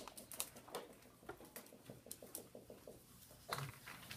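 Faint, irregular taps and scratches of a dry-erase marker on a whiteboard as a pipe with holes is drawn.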